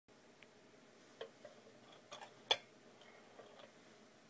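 Stainless steel toothpick dispenser being worked to release a single toothpick: a few light, scattered metallic clicks, the sharpest and loudest about two and a half seconds in.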